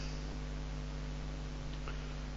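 Steady electrical mains hum with a low hiss from the recording chain, and nothing else.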